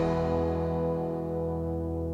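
A rock band's last chord, with guitar among the instruments, held and ringing out, slowly fading after the closing hits.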